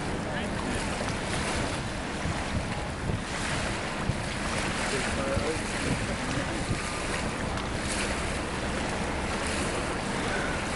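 Wind buffeting the camcorder microphone over the wash of open water, a steady low rushing noise with no distinct events.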